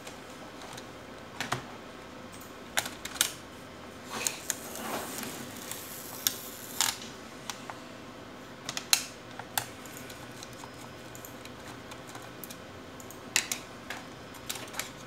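Sharp plastic clicks and snaps from the bottom case of an HP 245 G8 laptop as its edge is worked along the seam with a plastic card and fingers, the case clips catching and releasing at irregular intervals. A short scraping of the card along the seam comes around the middle.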